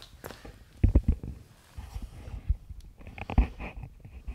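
Handling noise from a phone camera being moved and set down on the floor: several dull thumps and knocks with rubbing against the microphone.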